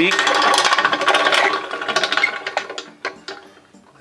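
Archery draw board's hand-crank winch clicking rapidly as a compound bow is cranked on it, the clicking dying away over about the first three seconds with a few faint clicks after.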